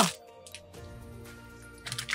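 Quiet background music with held, sustained chords.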